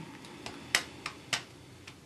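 A handful of short, light clicks at irregular spacing, two of them sharper than the rest.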